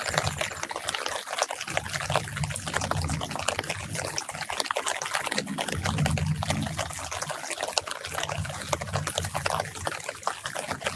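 Light rain falling on orange tree leaves and dripping, a dense spatter of small drops. A low rumble swells and fades underneath three times.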